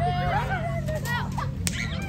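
Children shouting and squealing in a crowd, with one sharp crack near the end, over a low steady hum.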